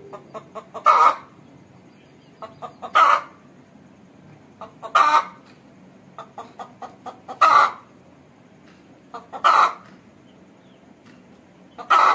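Aseel hen cackling: each phrase is a run of short clucks ending in one loud, drawn-out call. The phrase repeats about every two seconds, six times.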